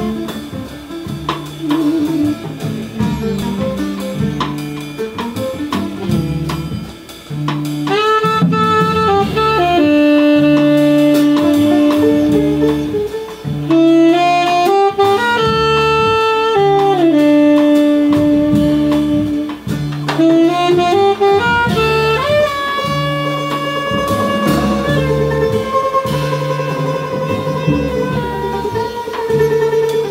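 Live jazz: a tenor saxophone plays a slow melody, settling into long held notes about eight seconds in, over an upright double bass repeating a low figure and a drum kit with cymbals.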